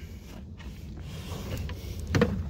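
Low, steady background rumble with faint rustles and light clicks, the sound of a phone being moved around while filming.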